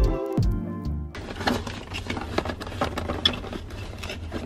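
Background music that cuts off abruptly about a second in, followed by light clicks and knocks of a hand rummaging through cardboard boxes of Nespresso coffee pods.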